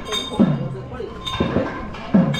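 Rhythmic percussion with bells: a drum struck about twice a second, each stroke's low tone dropping in pitch just after the hit, over steady metallic ringing and clinking.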